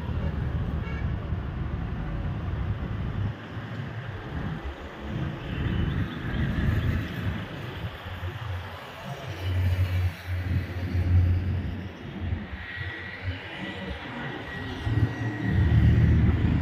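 Road traffic going past: vehicle engines and tyres making a low rumble that swells and fades as vehicles pass, loudest about ten seconds in and again near the end.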